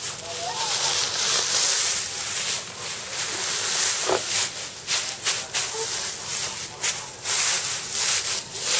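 Dry straw rustling and crackling as it is handled and spread in a nest, a continuous hiss with quicker crackles from about halfway through. A few faint short bird calls are heard over it.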